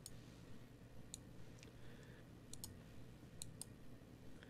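Faint, scattered clicks of computer input over near-silent room tone: about seven in all, some in quick pairs.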